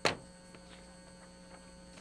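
Steady electrical mains hum, opened by one brief, sharp noise right at the start.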